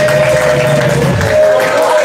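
Live band holding a sustained chord, with a low bass note underneath that stops a little over a second in.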